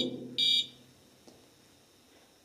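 A ghost-hunting sensor device gives one short electronic beep about half a second in, which the investigators take as a spirit touching it.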